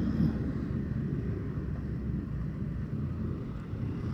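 Steady low rumble of heavy road traffic and a moving vehicle, with wind noise on the microphone.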